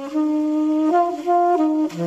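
Alto saxophone playing a jazz melody: a line of held notes stepping up and down, each note clear and rich in overtones.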